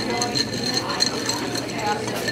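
Ice clinking against the inside of a drinking glass as a straw stirs it, a quick run of light clinks over the babble of a busy restaurant dining room.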